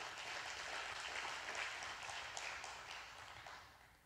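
Faint applause from a congregation, a steady patter of clapping that dies away shortly before the end.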